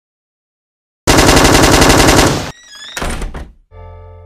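A loud, rapid burst of automatic gunfire lasting about a second and a half, followed by a shorter burst with whistling tones that slide in pitch. Near the end a sustained musical chord begins and slowly fades.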